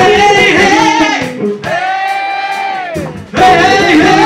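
Live rock band playing: electric guitar, bass and drums under a sung melody of long held notes with vibrato. A new loud phrase comes in about three seconds in.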